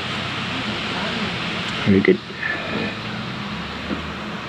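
Steady whirring hiss with a low hum from an electric pedestal fan running, and a short spoken "very good" about two seconds in.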